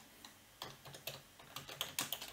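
Computer keyboard keys clicking as a word is typed: a faint, irregular run of about a dozen quick keystrokes.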